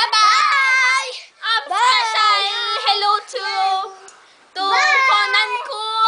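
A child singing in a high voice, unaccompanied, in sliding phrases broken by short pauses about a second and a half in and about four seconds in.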